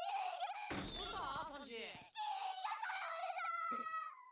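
High-pitched, tearful anime character voice speaking Japanese dialogue, wavering through the first half and then holding a long, steady wail.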